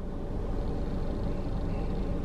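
Low, steady rumble of a motor vehicle's engine, heard from inside a car.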